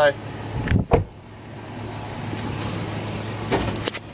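A car door shuts with a thud about a second in, then the car's engine runs steadily and grows louder as the car pulls away.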